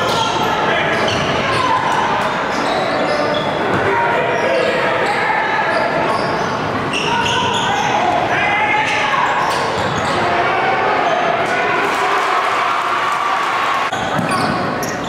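A basketball dribbled on a hardwood gym floor, the bounces sounding through a steady din of crowd voices and shouting that echoes around the gym.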